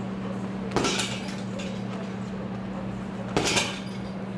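Two jabs with a boxing glove landing on a hanging heavy bag, about two and a half seconds apart, each a sharp slap, over a steady low hum.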